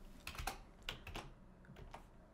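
Faint computer keyboard typing: a short run of irregular keystrokes as a word is typed in, bunched about half a second and one second in.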